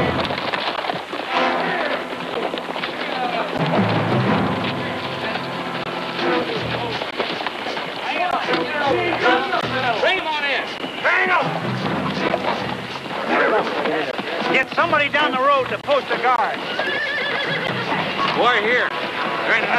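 Several horses whinnying, with hooves clattering, among agitated voices. Several of the whinnies come about halfway through and again near the end.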